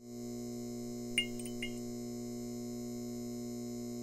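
Steady electrical hum, like a lit neon sign, that swells in at the start, with a few short crackles about a second in.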